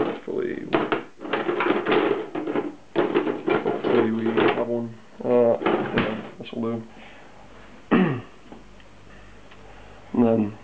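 Kitchen utensils of metal and wood clattering in a drawer as someone rummages through it for a spatula: a rapid, irregular run of clinks and knocks over the first five seconds or so.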